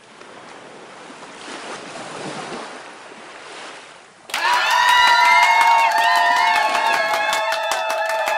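A soft rushing noise that swells and fades. About four seconds in it is cut by a sudden, much louder stretch of several steady electronic tones stepping in pitch over rapid clicks.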